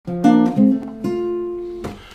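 Nylon-string classical guitar played fingerstyle: a short phrase of about four plucked chords in the first second, the last one left to ring and fade.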